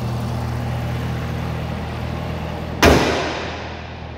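Supercharged 6.2-litre LT4 V8 idling steadily. Nearly three seconds in, the hood is slammed shut with one sharp, loud bang.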